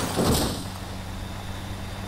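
A car crashing heavily into the ground, a loud impact just after the start, followed by the steady low drone of a car engine running, heard from inside the cabin.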